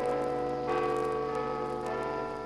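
Large bells striking a sequence of different notes, a new stroke about every two-thirds of a second, each ringing on into the next. The sound comes from a worn 78 rpm sound-effects record, with surface crackle under it.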